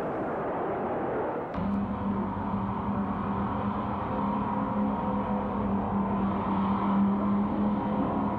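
Diesel locomotive engine noise. About a second and a half in, the sound cuts abruptly to a steady low drone of a locomotive engine running with a constant hum.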